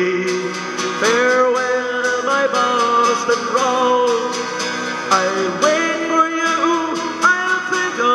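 A man singing a folk ballad over steadily strummed acoustic guitar.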